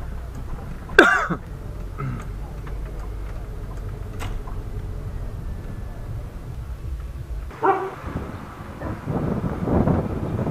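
Low, steady engine and road rumble inside a slow-moving car's cabin, with a short, sharp call falling in pitch about a second in. The rumble cuts off suddenly past the middle, giving way to outdoor street noise.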